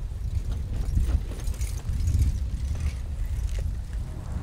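Wind buffeting the microphone in a low, gusting rumble, with scattered light clicks and rattles as the loaded touring bicycles roll over the level crossing.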